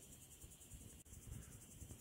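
Faint crickets chirping: a steady high-pitched pulsing over near silence.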